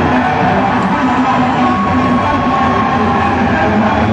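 Live rock band playing loudly on stage, with electric guitar, bass and drums at a steady, dense level.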